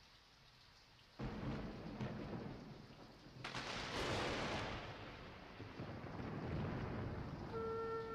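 A thunder-like rumble over rain-like hiss. It starts suddenly about a second in and swells again around the middle. Steady wind-instrument-like tones come in near the end.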